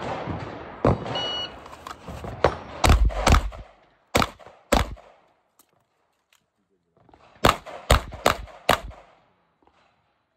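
A shot timer beeps about a second in, then a 9mm pistol fires a fast string of shots, falls silent for about two seconds, and fires another fast string of shots near the end.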